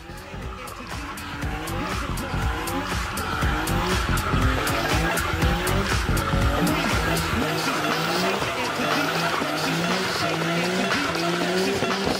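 Nissan Skyline R32 GT-R's twin-turbo straight-six held at high revs during a burnout, its rear tyres squealing continuously as they spin. Background music plays alongside.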